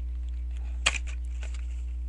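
Steady low hum with one sharp click a little under a second in and a few faint ticks, from hands working open the cardboard flap of a trading-card blaster box.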